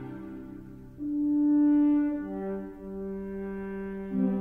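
Orchestral music led by a French horn: a loud held note swells in about a second in, then gives way to softer sustained chords.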